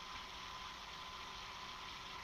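Faint, steady hiss of a home audio recording's background noise, with a thin steady tone running underneath; nothing else happens.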